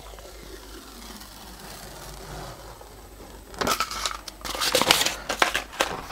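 Transfer-paper backing film peeled off a wooden block and handled: faint rustling at first, then louder crinkling and crackling of the paper sheet in the second half.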